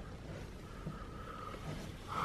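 Faint, steady hiss of heavy rain falling on the bus, heard from inside, with a low rumble underneath.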